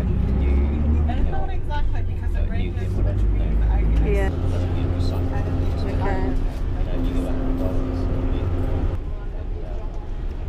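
Truck engine and road noise heard from on board while driving at speed on a highway, a steady low drone, with people talking in the background.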